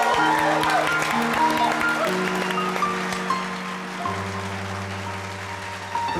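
Electronic keyboard playing a slow intro of sustained chords that change about every two seconds, with a short higher melody line over them. Audience applause carries over the first second or so.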